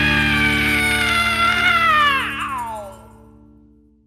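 The final held note of a rock song: a male singer holds one long, slowly falling note over the band's last sustained chord, then slides his voice down and stops about two and a half seconds in. The chord fades out after that.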